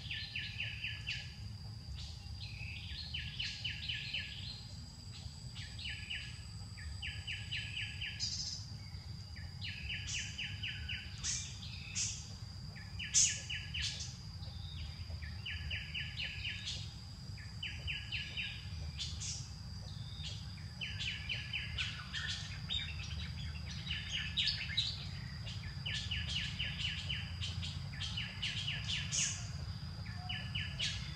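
Bird calls: a short trill of rapid notes repeated every second or two, over a steady high-pitched whine and a low background rumble.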